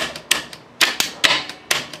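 Apollo RFZ 125 pit bike's gearshift mechanism clicking as the transmission is shifted down to neutral, about six sharp metallic clicks in two seconds, with the engine's side cover off.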